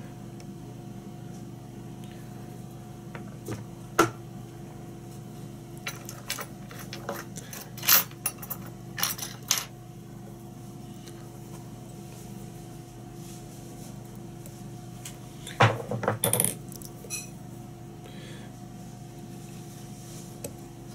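Scattered light metallic clicks and taps from fly-tying tools against the vise and hook while the fly is being finished off. They come once about four seconds in, as a cluster between about six and ten seconds, and again around sixteen seconds. A steady low electrical hum runs underneath.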